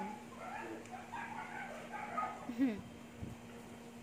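Dog whining and yipping in a string of short high calls, ending in a brief falling whine.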